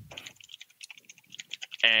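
Computer keyboard typing: a quick, irregular run of light key clicks, with a speaking voice coming back in just at the end.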